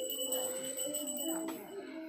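Steady ringing of a small bell over a murmur of voices; the ringing fades about one and a half seconds in.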